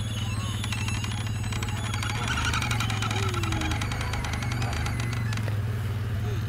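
A small engine running steadily at an even speed, with faint voices calling in the background.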